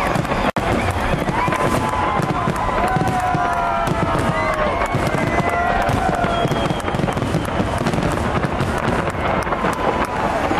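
Aerial fireworks bursting and crackling in rapid, continuous succession, with a crowd's voices calling out over them. The sound cuts out for an instant about half a second in.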